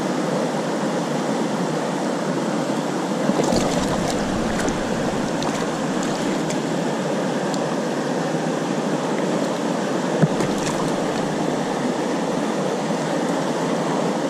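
Mountain river rapids rushing steadily at close range, with a few faint clicks about four seconds in and again near ten seconds.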